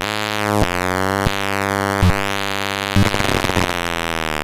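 Eurorack modular synthesizer patch of Mutable Instruments Tides, Stages and an NLC Neuron playing a buzzy, harmonic-rich noise drone, its upper overtones sweeping up and down. Short clicks break in about four times.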